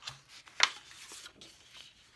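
Large sheets of patterned scrapbook paper rustling and flapping as they are turned over by hand, with one sharp paper snap about half a second in.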